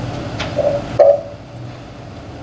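A pause in a lecture-room talk: a small click, then a short low knock about a second in, after which only faint room hum remains.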